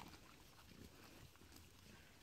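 Near silence, with faint sounds of pigs rooting in the soil.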